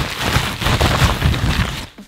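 Plastic bubble wrap crinkling and crackling loudly as an air strut is pulled out of it. It makes a dense run of sharp crackles that stops abruptly near the end.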